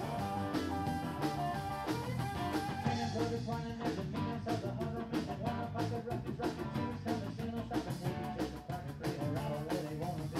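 A live rock band playing, with electric guitars and drums.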